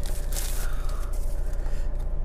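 Plastic wrapping rustling and scraping as it is peeled off a cardboard phone box, with a few soft rustles, the clearest about half a second in. A steady low hum runs underneath in the car cabin.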